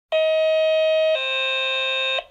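An electronic two-tone alert: a steady higher tone for about a second, then a steady lower tone for about a second.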